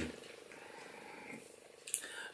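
Quiet room tone with a faint steady hum, and a short click near the end.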